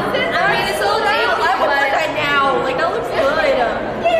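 Several women's voices talking and exclaiming over one another, with no single clear speaker.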